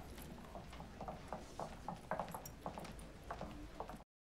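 Footsteps clicking on a hard floor, about four steps a second, over a low room rumble; the sound cuts off suddenly at the end.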